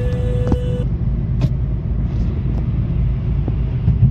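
Steady low engine and road rumble heard inside a Kia's cabin while it cruises in sixth gear at low revs. The owner calls the car's sound insulation weak. Music stops under a second in, and there is a sharp click about a second and a half in.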